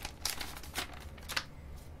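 A metallized anti-static bag crinkling and rustling in the hands as an SSD is pulled out of it, with several short, separate crackles.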